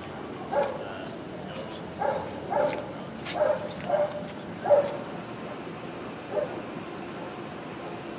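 A dog barking repeatedly, about seven short barks at irregular spacing, the last one fainter.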